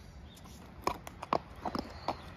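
A horse's hooves clip-clopping on a wet paved road as it walks, with a handful of uneven hoof strikes in the second half.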